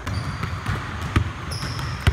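Basketballs bouncing on a hardwood gym floor: a few separate thuds, the loudest a little after a second in.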